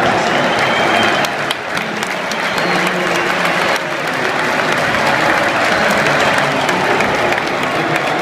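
Large football stadium crowd applauding, a dense steady clapping from thousands of fans with voices mixed in.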